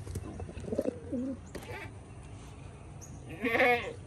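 Pigeons give soft, low coos about a second in. At about three and a half seconds a loud, quavering bleat from a farm animal rises over them.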